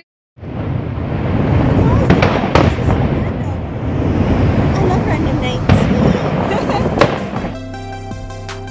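Fireworks going off in a continuous barrage, with several sharp bangs standing out, the strongest about two and a half seconds in and near the end. Music comes in just before the end.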